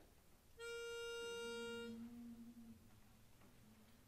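A pitch pipe sounds one steady reed note for about a second and a half, giving the chorus its starting pitch. A fainter, lower hummed note from the singers follows as they take the pitch.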